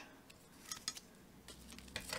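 A few faint, short clicks and light handling noises, about a second in and again near the end, from craft tools and dough being handled on a plastic tablecloth.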